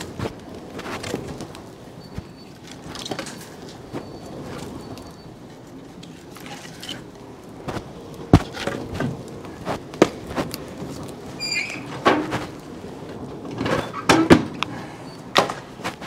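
Split firewood being loaded into the open firebox of a wood-fired maple syrup evaporator: a run of irregular wooden thunks and knocks, the sharpest about halfway through, with a short squeak a little later and the firebox doors closing near the end.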